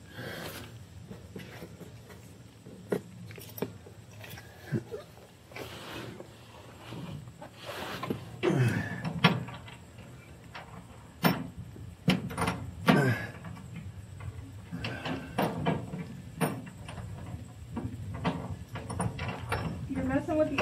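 Nuts being threaded by hand onto stainless steel bolts from under a pickup's bed: sporadic small metallic clicks and scrapes, with a few short, louder low sounds about halfway through.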